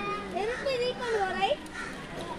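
Children's high-pitched voices calling out and chattering among spectators, with rising and falling shouts, loudest about a second and a half in.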